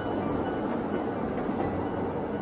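Electric train running past on street track, a steady rumble.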